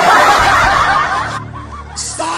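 A loud burst of laughter from several voices, starting suddenly and easing off in the second half.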